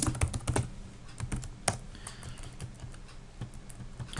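Computer keyboard typing: a quick run of keystrokes at first, then scattered single key presses.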